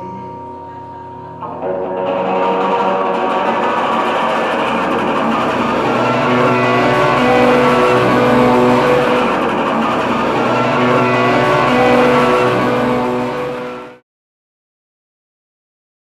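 Solo electric guitar: a chord rings quietly, then louder, fuller playing comes in about a second and a half in and goes on until it cuts off suddenly near the end.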